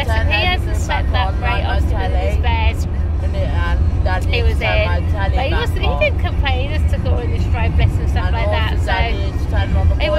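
Steady low road and engine rumble inside a moving car's cabin, under talking.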